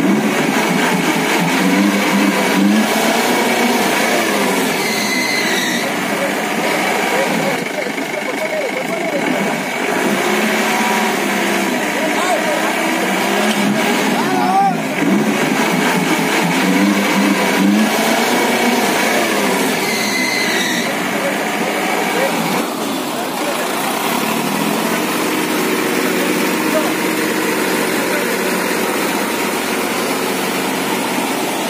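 Off-road 4x4 engine revving in repeated rising and falling surges as the vehicle works its way up a muddy track, then running more steadily near the end, with people's voices over it.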